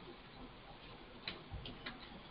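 Faint computer keyboard keystrokes: a few separate clicks in the second half, as text is typed into a document.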